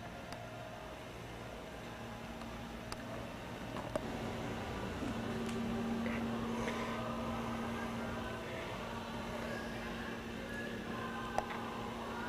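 Steady background hum of a large indoor hall, with a low steady tone joining about four to five seconds in and a few faint clicks.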